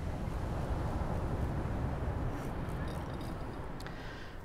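Seaside ambience: a steady low rumble of ocean surf.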